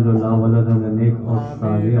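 A man's voice leading a dua (Islamic supplication) in Urdu, recited continuously in a chant-like cadence.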